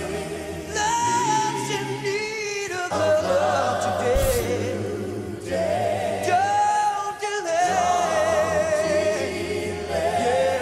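Live a cappella vocal group singing a slow soul ballad: a lead voice carries a wavering melody over sustained harmonies and low held notes from the backing singers, with no instruments.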